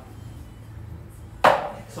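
A single sharp strike of the auctioneer's gavel about one and a half seconds in, knocking down the sale. Before it there is only quiet room tone.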